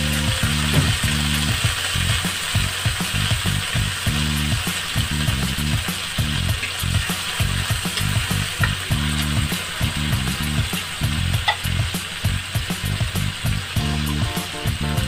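Sardines in tomato, onion and garlic sizzling steadily in a hot aluminium wok, with a few light clicks of a metal spatula against the pan.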